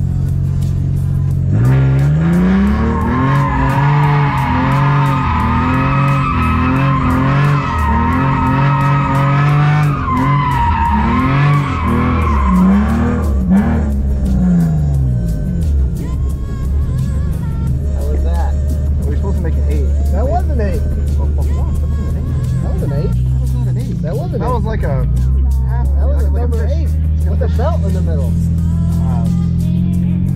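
Cabin sound of a BMW E46 M3's straight-six drifting: the engine revs swing up and down over and over while the tyres squeal, for the first half or so. After that the car falls back under background music with a steady beat and bass line, which runs throughout.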